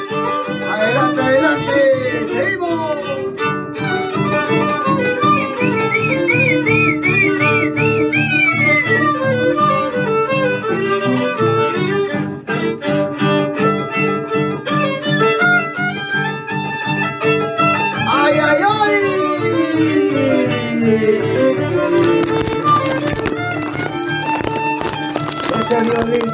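Andean harp and violin playing a lively shacatán instrumental, the harp's bass notes keeping an even beat under a wavering, sliding violin melody. In the last few seconds a loud rush of noise covers the upper range.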